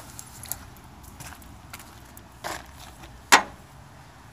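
Light handling noise from a hand-held phone and tools: scattered small clicks and a brief rustle, with one sharp click a little past three seconds in, the loudest sound.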